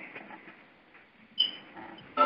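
Low hiss with a single short, high-pitched chirp about one and a half seconds in.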